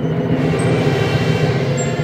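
Funeral march played by a band, its low instruments holding a loud, steady chord.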